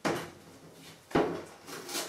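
Old rubber seal being pried and pulled off the edge of a fiberglass pop top with a hand tool: a sharp tearing scrape at the start, another about a second in, and a smaller one near the end.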